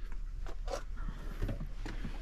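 Faint rustling and a few soft taps from a person moving and handling the phone as he climbs out of a pickup's cab, over a steady low hum.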